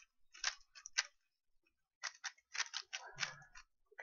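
Stickerless 3x3 speed cube being turned fast during a solve: quick runs of sharp plastic clicks as the layers snap round, with a pause of about a second before a longer run of turns.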